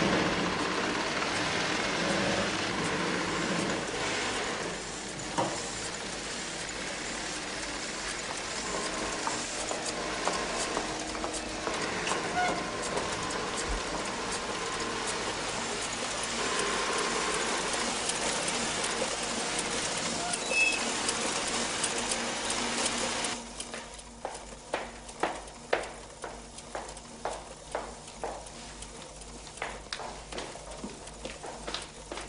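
Factory floor noise: a dense, steady din of running machinery with scattered knocks. About 23 seconds in it cuts off suddenly and gives way to irregular footsteps clicking on a hard floor.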